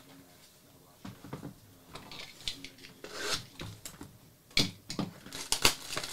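Plastic shrink wrap being torn and peeled off a trading card box, with crinkling and scattered sharp snaps that grow more frequent and louder near the end.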